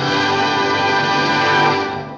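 Orchestral end-title music holding a final chord, which starts to fade away near the end.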